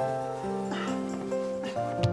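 Soft background music of held notes, with a small dog whimpering briefly a little under a second in.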